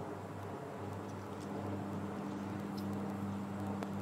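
Quiet open-air golf-course ambience under a steady low hum, with a few faint ticks, while the ball is in flight.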